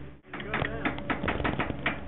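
Rapid, evenly spaced mechanical clicking, about ten clicks a second, starting after a brief gap a quarter second in.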